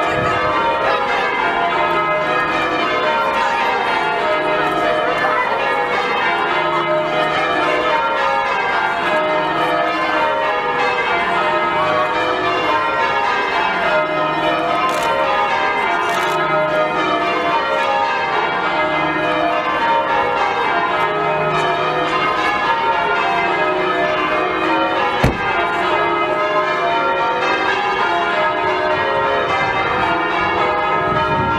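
Bristol Cathedral's ring of church bells pealing in change ringing, a continuous run of overlapping strikes falling down the scale again and again. A single short thump cuts in about five seconds before the end.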